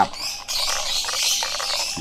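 Many small birds chirping continuously in a dense chorus.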